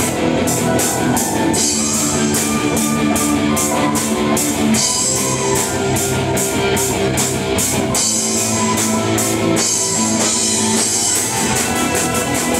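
Live symphonic metal band playing: electric guitars and keyboards holding chords over a drum kit, with cymbal hits about four a second.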